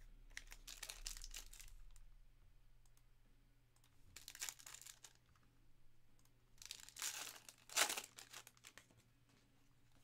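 Foil trading-card pack wrappers being torn open and crinkled by hand, in three short bursts of rustling; the last burst holds the loudest rip.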